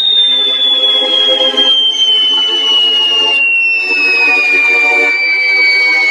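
Cartoon sound effect: a long whistle sliding slowly and steadily downward in pitch, over background music.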